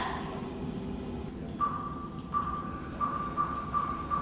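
A low rumble with a steady high-pitched tone coming in partway through and repeating in several pulses, the later ones shorter.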